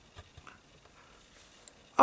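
A few faint clicks from multimeter test probes being handled and pushed into a mains socket, over quiet room tone.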